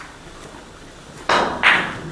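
Two loud knocks about a third of a second apart, the second the louder.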